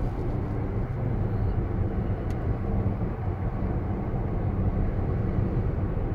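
Steady road and tyre noise heard inside the cabin of a Tesla Model S P85D electric car cruising at about 47 mph.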